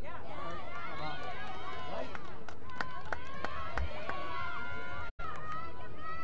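Many overlapping voices of lacrosse players shouting and calling to each other during play, with scattered sharp clicks. The sound drops out for a moment about five seconds in.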